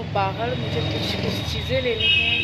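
A woman talking over a steady low rumble of a running vehicle engine nearby.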